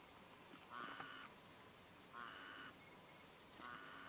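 A bird calling three times, faint, short harsh caw-like calls about a second and a half apart, over a faint steady background hiss.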